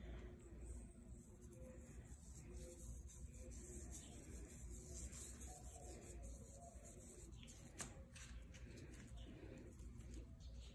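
Near silence: faint room tone with a low hum and one sharp click about eight seconds in.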